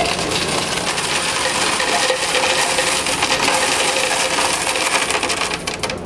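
Loose coins, mostly pennies, poured from a jar into the tray of a coin-counting machine: a continuous clatter of many coins striking the tray and each other, thinning to a few separate clinks near the end.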